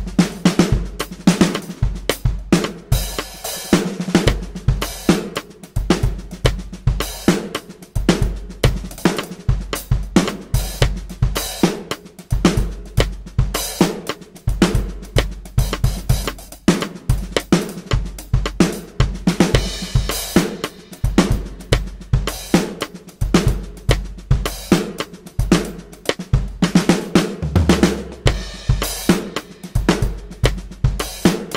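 Electronic drum kit (Roland V-Drums) playing a busy, broken-up funk groove with kick, snare and a broken hi-hat pattern, embellished and varied freely.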